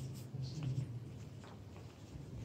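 Faint scattered footsteps and scuffs on a wooden parquet floor, with a low murmur of voices in the room.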